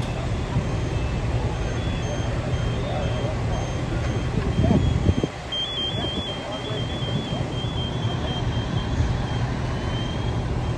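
Fire engines' diesel engines running with a steady low rumble, under a series of short, high electronic beeps that repeat evenly, clearest a little past halfway, like a vehicle's back-up alarm.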